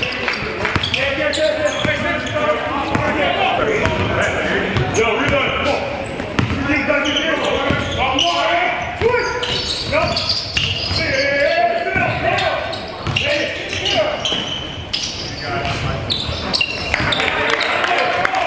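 A basketball bouncing on a hardwood court during a scrimmage, amid players' indistinct calls and shouts in a large gym.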